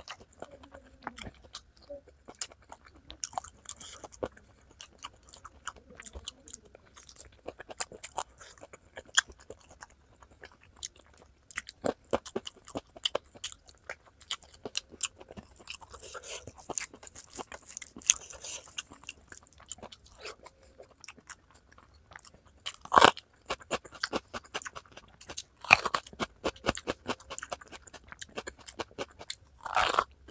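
Close-miked mouth sounds of someone eating chicken feet curry with rice by hand: a steady run of chewing and crunching clicks. Louder crunches come twice in the second half, and a loud crunch near the end as a raw green bell pepper is bitten.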